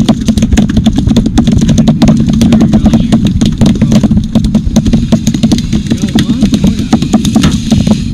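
Boat engine running with a steady low hum, covered by many irregular sharp clicks and knocks.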